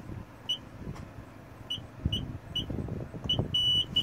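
Car wash pay-station keypad beeping as a five-digit code is keyed in: five short, high beeps spread unevenly over about three seconds, then one longer beep near the end.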